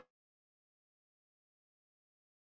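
Dead silence: the audio drops out completely, with the mariachi music cut off at the very start. It is a live-stream transmission failure.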